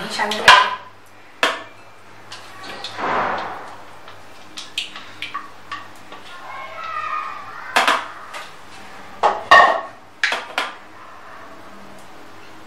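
Plastic bowls knocking and a spatula scraping as thick yogurt is scraped from one plastic bowl into another, then a spoon clacking and stirring in the plastic mixing bowl. Sharp knocks come in two clusters, one near the start and one just past halfway, with a brief scrape about three seconds in.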